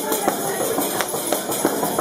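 Panderetas (jingled hand frame drums) played in a steady rhythm, accompanying women's voices singing a traditional folk dance song.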